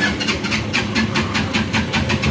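Auto-rickshaw engine running as the rickshaw moves along, heard from inside its cabin, with a rapid rhythmic beat of about five pulses a second.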